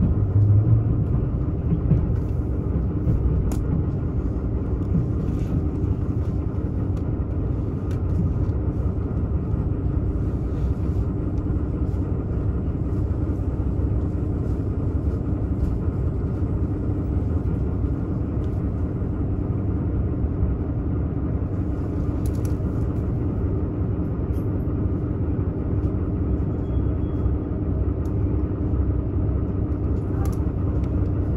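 Running sound of a diesel limited express railcar heard from inside the passenger cabin: a steady low engine drone and the rumble of wheels on rail.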